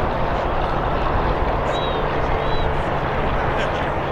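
Wind rushing steadily over the microphone outdoors, with faint distant voices beneath it.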